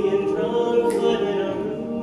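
Men's a cappella group singing held chords in close harmony, with sharp hiss-like accents about once a second.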